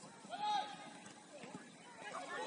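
A single distant shout from a player on the pitch, brief and rising then falling in pitch, about half a second in. Faint open-air background noise for the rest.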